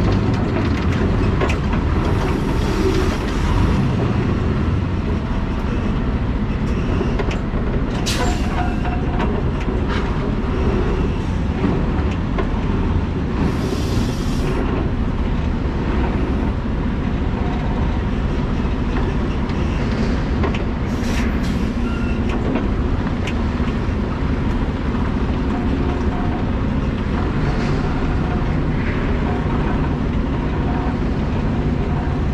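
Tractor-trailer pulling an empty flatbed trailer slowly: a steady diesel truck rumble with rattling from the rig, broken by a few short hissing bursts and clicks.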